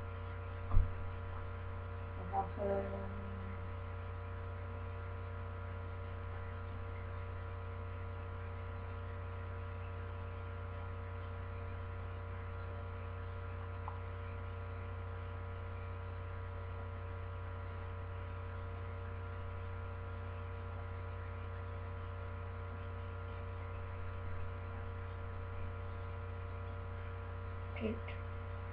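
Steady electrical mains hum with a buzz of many even overtones, picked up by a webcam microphone. There is a single knock about a second in and a short muffled sound a couple of seconds in.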